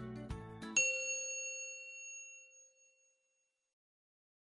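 A single bright, bell-like chime of an outro logo sting, struck about a second in and ringing out, fading away over about two seconds. A few notes of soft background music lead into it.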